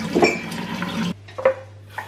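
Washing up at a kitchen sink: plates and utensils clattering. A steady rushing sound cuts off sharply about a second in, then two short sharp clinks of dishes.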